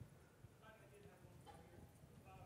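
Faint, distant speech from an audience member talking off-microphone, over quiet hall room tone.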